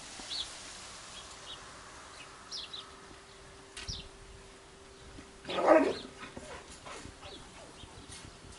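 Labrador retriever puppy making several short, high squeaks, then one louder yelp a little past halfway.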